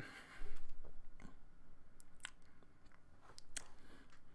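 A crunching, rustling noise close to the microphone for about a second, followed by scattered faint clicks and small mouth sounds.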